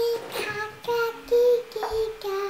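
A young girl singing a short run of held notes, mostly on one pitch.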